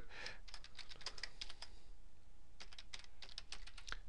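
Typing on a computer keyboard: a quick run of keystrokes, a pause of about a second, then a second run, as a short phrase is typed into a text box.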